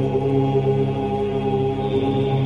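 Sustained chanting of "Om" as a steady, droning mantra, with several long held notes sounding together.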